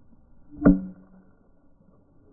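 Youth baseball bat hitting a pitched ball: one sharp crack with a brief ringing ping, about two-thirds of a second in.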